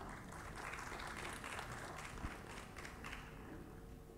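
Faint applause from a hall audience, a soft even patter of many hands that thins out near the end.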